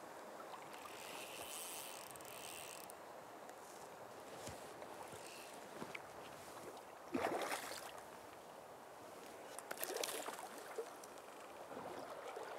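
Low, steady rush of river current around wading anglers, with a short louder splash-like noise about seven seconds in and a few smaller ones around ten seconds.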